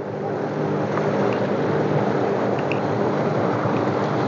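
Jet ski engine running steadily under load while towing a second jet ski whose engine has apparently failed, with the rush of water from its wake. The drone grows a little louder in the first second and then holds.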